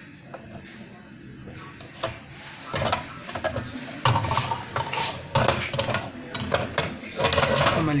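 Voices talking from a little under three seconds in, mixed with scattered light clicks and clatter of small hard objects being handled.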